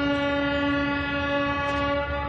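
A horn sounding one long, steady note over a low rumble.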